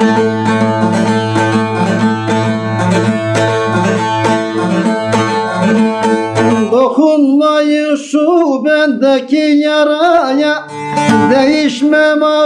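Bağlama (long-necked Turkish saz) playing a folk-song instrumental passage over a steady low drone. About seven seconds in, a man's voice comes in singing a wavering, ornamented melody over sparser playing.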